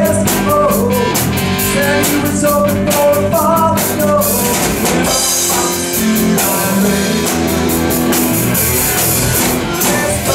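Live rock band playing at full volume on drum kit, electric bass and electric guitar, with a wavering melody line over the top.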